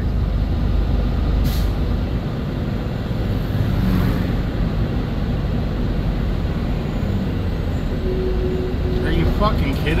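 Semi truck's diesel engine running with road rumble inside the cab as the truck drives slowly, a steady low sound, with a couple of brief hisses, one about a second and a half in and another around four seconds.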